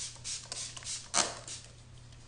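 MAC Fix+ pump mist spray spritzed onto the face: several short hisses, the strongest just after a second in.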